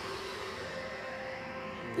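A steady rushing noise, an anime battle sound effect, with faint held music tones underneath, coming from the episode playing in the room. A short laugh comes right at the end.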